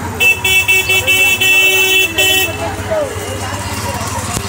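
A vehicle horn sounding a string of short honks for about two seconds, over the hum of street traffic and passing voices.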